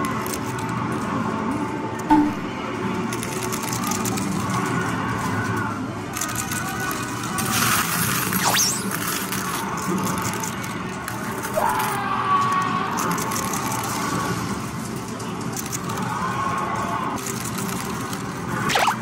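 Music over the running sound of a coin-pusher medal game machine, with a couple of short falling sweeps midway.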